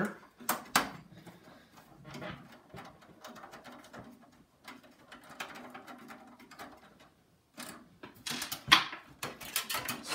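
Computer parts being handled as a PCI modem card is dug out from under other hardware. A couple of sharp clicks come first, then faint rustling and shuffling, then a quick run of clicks and knocks near the end.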